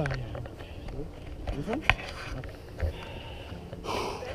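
A person's short breaths and brief wordless vocal sounds over a low rumble on the camera microphone, with a sharp click about halfway through.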